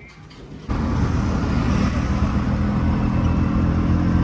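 Engine of a CNG four-stroke auto-rickshaw (Compact 4S) running steadily, heard from inside its passenger cabin. The engine sound comes in suddenly under a second in.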